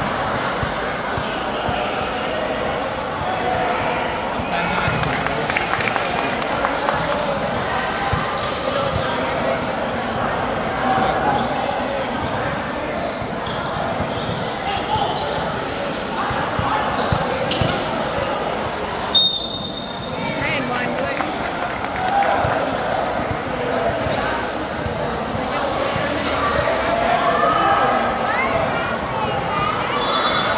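Basketball bouncing on a hard court during a 3x3 game, over a steady din of players' and spectators' voices. A short, high referee's whistle blast sounds about two-thirds of the way through.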